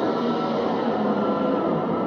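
Electric guitar played through effects and a small amplifier as free, abstract noise music: a dense, steady distorted drone with a few held tones in it.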